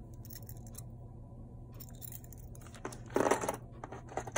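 Light clicks and clinks of costume jewelry being handled, then a short, louder crinkling rustle of a plastic zip bag about three seconds in.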